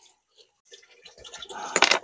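A ripe avocado being cut with a knife and pulled apart into halves on a wooden cutting board: soft, wet cutting sounds that grow louder, ending in a short, sharp clatter on the board near the end.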